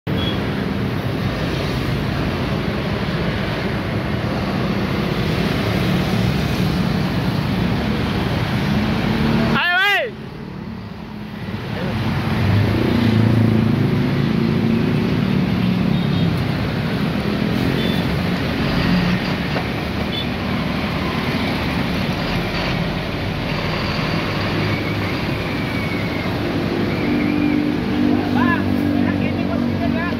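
Heavy diesel truck tractors hauling tank trailers, engines running steadily as they move off at low speed, with tyre and road noise. The sound dips sharply about ten seconds in, with a brief wavering tone.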